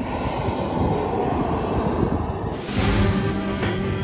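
A steady rumbling roar of noise. About two-thirds of the way through, background music comes in and carries on with guitar.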